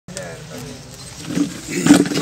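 Voices of people talking at a gathering start abruptly, with a sharp loud bang near the end.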